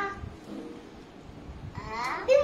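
A young child's short, bleat-like vocal sounds: a brief pitched utterance at the start, a faint one about half a second in, and a child's voice starting up again near the end.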